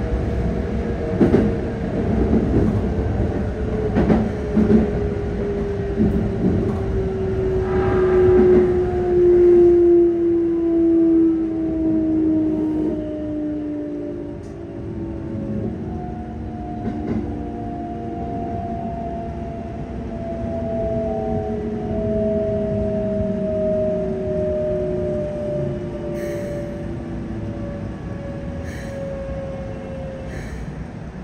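Keikyu 600 series train's Mitsubishi GTO-VVVF inverter sounding in several steadily falling tones as the train slows under braking, heard inside the passenger car. Wheels knock over rail joints through the first several seconds, over a steady running rumble.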